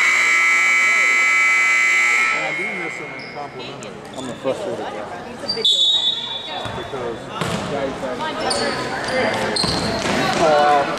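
Gym scoreboard horn sounding steadily for about two seconds, marking the start of the third period, then crowd chatter, a short referee's whistle about six seconds in, and a basketball bouncing as play resumes.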